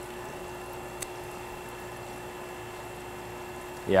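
Steady hum of running distillery equipment, with a faint click about a second in.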